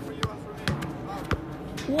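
A ball thudding three times, roughly half a second apart, with a child's voice exclaiming 'wow' at the very end.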